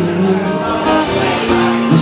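Live acoustic guitar accompaniment under a male singing voice, between two sung lines; the next line begins right at the end.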